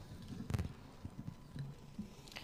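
Footsteps in a quiet hall, with one sharp knock about half a second in.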